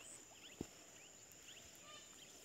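Near silence outdoors: faint, scattered short bird chirps over a steady faint high-pitched tone, with one soft low knock about half a second in.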